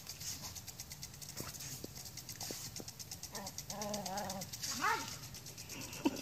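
Lawn sprinkler ticking rapidly and evenly as it sprays, while a Scottish Terrier gives a wavering whine around the middle and a short, sharp yelp near the end.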